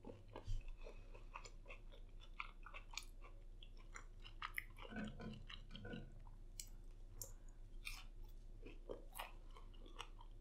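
Close-miked chewing of a crunchy Flamin' Hot fried pickle, with many small crunches and wet mouth clicks throughout.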